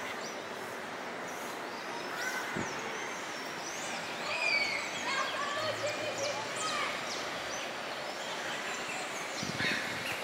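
Small birds chirping and whistling, many short calls scattered throughout and thickest near the middle, over a steady background of outdoor noise.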